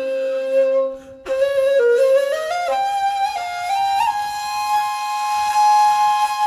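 A flute-like wind instrument playing a melody of held notes that step up and down, with a short break about a second in.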